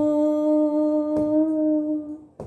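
A woman's unaccompanied voice holding the final note of a Telugu devotional song as a long, steady hum on one pitch.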